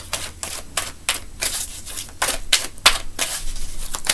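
A deck of tarot cards being shuffled by hand, overhand: an irregular run of light card slaps and clicks, about three a second.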